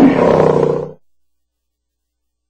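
A recorded animal roar sound effect: one long, gritty roar that cuts off about a second in.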